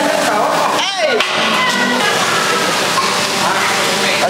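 Indistinct voices of several people talking, with a brief falling glide about a second in.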